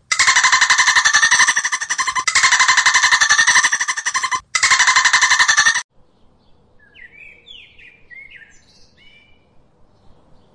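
A dolphin's rapid train of clicks, loud, in three stretches with short breaks, cutting off about six seconds in. Then a few faint, quick chirps from saffron finches.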